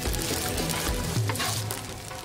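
Egg and rice sizzling in a hot oiled frying pan as they are mixed with a wooden spatula, a steady hiss. Background music plays along with it.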